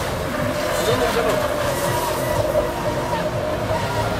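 Radio-controlled racing boats running at speed across the water, a steady motor tone running through the noise.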